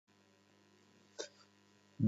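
Near silence: faint steady hum of a recording setup, with one brief faint sound a little over a second in.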